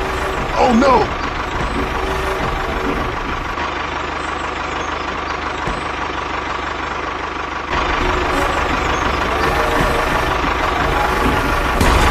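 Toy tractor's motor sound running steadily, a little quieter for a few seconds in the middle. About half a second in, a short voice-like cry rises and falls.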